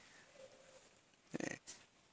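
Mostly quiet, with a man's brief breathy chuckle about one and a half seconds in.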